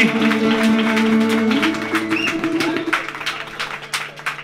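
Cretan laouta and a mandolin playing the closing phrase of a tune: a chord change about one and a half seconds in, then the last plucked notes ringing and fading out.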